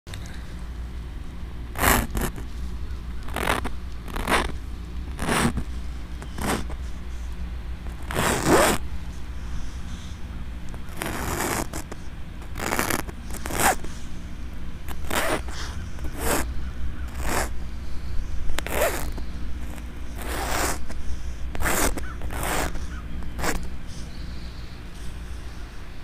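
Fingertip scraping through frost on a dark fabric cover, a long series of short swipes as letters are traced, over a steady low rumble.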